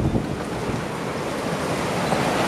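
Strong storm wind and heavy rain from a tornado-producing thunderstorm, a continuous rushing roar with gusts buffeting the microphone.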